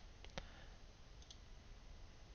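Near silence with faint computer mouse clicks: two in quick succession about a quarter second in, then fainter ticks about a second later.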